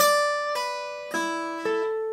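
Steel-string acoustic guitar picked one note at a time, about four notes in two seconds, each left ringing over the next. It is a B minor pentatonic shape played over E minor.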